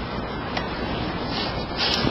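Steady rubbing noise of clothing brushing against a clip-on lapel microphone as the wearer moves, with a brief sharper hiss near the end.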